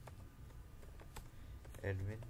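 Typing on a computer keyboard: a few separate keystrokes at an unhurried pace.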